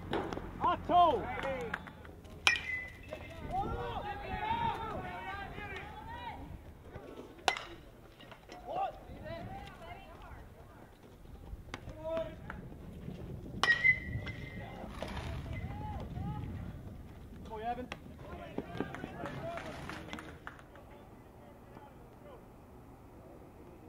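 Sounds of a baseball game: players and spectators calling out, with three sharp cracks of a ball on a metal bat. The first and last cracks ring briefly with a high ping.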